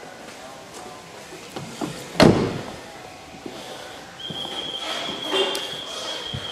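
A car door, the Mercedes-Benz E280's, being shut with one solid thud about two seconds in. A steady high-pitched tone starts about four seconds in and holds.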